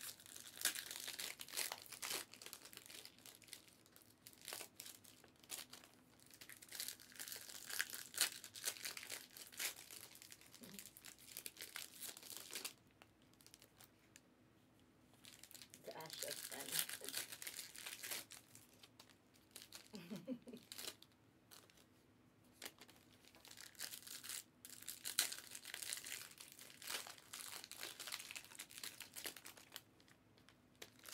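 Foil trading-card pack wrappers crinkling and tearing as packs are ripped open and handled, in stretches of a few seconds with short pauses between.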